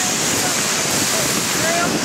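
Steady rushing hiss of a moving dog sled: runners sliding over soft snow, with wind on the microphone.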